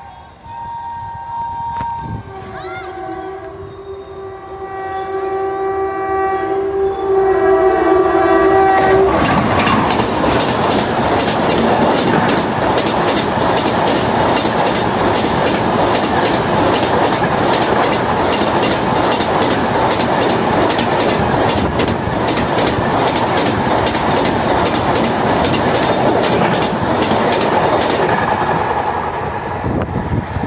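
WAP-4E electric locomotive's horn sounding on the approach: a brief higher two-note toot, then one long low blast of about six seconds. Then the express's coaches pass close at speed with a loud rushing noise and a rapid, regular clickety-clack of wheels on the track, which eases off near the end as the train moves away.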